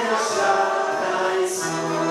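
A small mixed group of men and a woman singing a worship song together in harmony, with electronic keyboard accompaniment. The voices are held on sustained notes, with short hissing consonants about a quarter-second in and again about a second and a half in.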